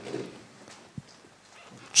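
A quiet pause in a man's speech through a handheld microphone: faint room tone with one short click about a second in.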